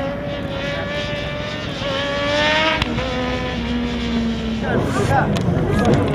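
Racing motorcycle engine at high revs, its pitch climbing and then dropping sharply just under three seconds in, then holding a lower steady note. Voices take over near the end.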